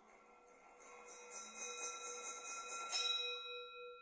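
A singing bowl rings with several steady overtones. Over it a high scraping rub, pulsing a few times a second, builds and then cuts off sharply about three seconds in. After that the bowl's tone rings on with a slow, wavering beat.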